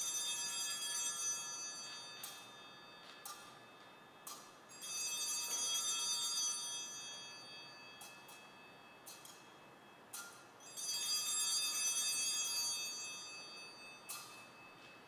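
Altar bells (Sanctus bells) rung three times at the elevation of the consecrated host, each ring a cluster of high tones that fades over a few seconds, with a few short jingles between the rings.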